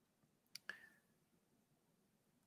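Near silence, broken by two faint clicks close together a little over half a second in.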